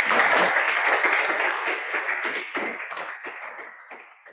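Audience applauding, a dense patter of many hands clapping that dies away steadily over the last couple of seconds.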